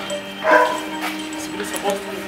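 A dog barking, with a short bark about half a second in, over background music with steady held tones.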